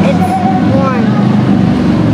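Street noise: a motor vehicle engine running steadily close by, with other people's voices in the background.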